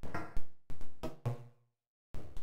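Synthesised percussive knocks from a Max/MSP patch: impulses ringing through a comb-filter bank, four uneven hits with short pitched tails, the last ringing low. The hits stop about three quarters of the way through.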